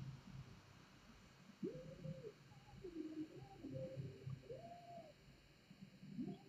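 Faint cooing bird calls, like a dove's: a few soft calls that rise and fall, about a second or two apart, over a quiet room.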